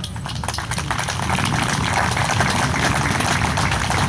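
Audience applauding, many hands clapping together, growing a little louder as it goes on.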